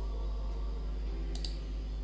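A single computer keyboard keystroke clicking about one and a half seconds in, over a steady low hum.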